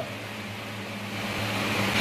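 A steady low hum from a running appliance in the room, with the faint scratch of a pen writing on paper.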